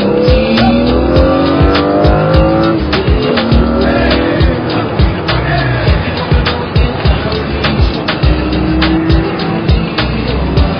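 Hip-hop music with a steady beat mixed over a car engine accelerating hard, its pitch climbing in long rises and dropping back at each gear change.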